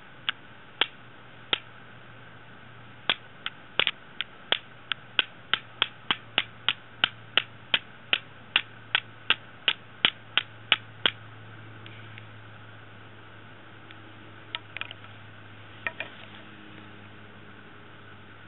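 Steel striker hitting a lump of marcasite again and again to throw sparks onto fungus tinder: sharp clicks, a few spaced strikes at first, then a steady run of about three a second that stops about two-thirds of the way through.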